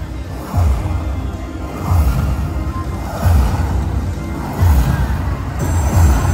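Slot machine playing its win rollup music while the credit meter counts up a bonus payout. A deep beat lands about every second and a half.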